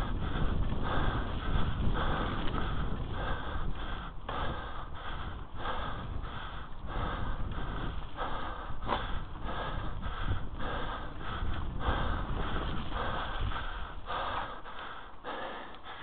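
Mountain biker breathing hard while riding, the breaths coming in short regular bursts, over a steady low rumble of the ride on the camera's microphone.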